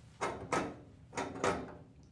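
Metal rider weights of a triple beam balance being slid along its beams: four short clicks in two pairs.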